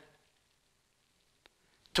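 Near silence in a pause between a man's spoken phrases, with a faint click about one and a half seconds in; his voice comes back at the very end.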